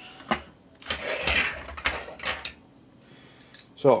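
Small metal CPU-cooler mounting brackets and screws in plastic bags being handled, clinking and rustling, with a sharp click just after the start and a few more clicks near the end.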